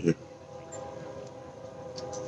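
A faint, steady drone of a few held, unchanging pitches.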